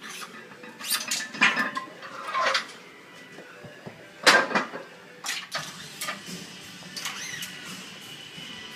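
Iron weight plates clanking and knocking as they are stripped off a loaded barbell in a squat rack to drop the weight, a handful of separate knocks with some ringing, the loudest a little over four seconds in.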